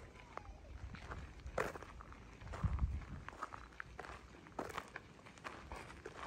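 Footsteps crunching on a gravel path at an irregular walking pace, with a few louder low thuds a little before the middle.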